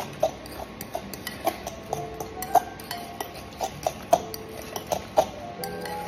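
A metal fork clinking and scraping against a glass mixing bowl while mashing sardines, making irregular short clinks, some of them ringing briefly.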